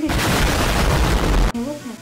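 Hot water being poured from an enamel mug into a bowl of baking soda and vinegar, a loud rushing, fizzing hiss that lasts about a second and a half and cuts off suddenly.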